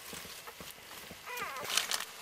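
A cocker spaniel mother licking a newborn puppy: wet licking and the newspaper bedding rustling, with a short high squeak from the puppy about one and a half seconds in.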